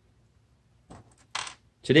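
A few faint clicks, then a brief light clatter about a second and a half in: a small metal carburetor jet needle and its plastic retainer set down from the hand onto a work mat.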